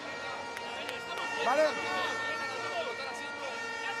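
Speech: a man's voice in a timeout huddle says "¿vale?", with further brief talk over a steady background noise of the hall.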